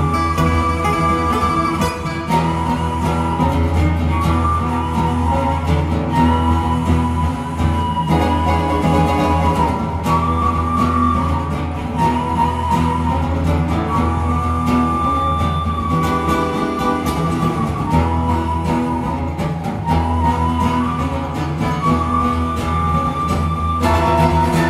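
Live instrumental music: two acoustic guitars playing together, with a melody of long held notes and a steady low drone underneath.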